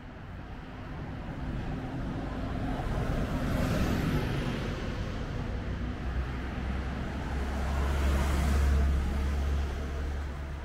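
Road traffic: two vehicles passing one after another, each swelling and fading. The first peaks about four seconds in; the second, with a deeper rumble, peaks near nine seconds.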